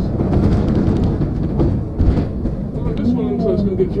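Inside a moving double-decker bus: a deep, steady rumble of engine and road with many rattles and knocks from the body, the loudest thump about halfway through. A person's voice comes in near the end. The whole track is pitched down, which makes it all sound deeper.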